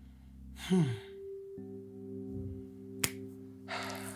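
Soft background music of sustained chords that shift about a second and a half in, with a woman's murmured "hmm" about a second in and one sharp click about three seconds in.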